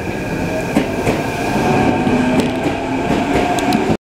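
Electric commuter train running along the platform track, getting louder as it comes close. Its motors give a steady hum from about halfway through, with wheel clatter and a few sharp clicks from the rails.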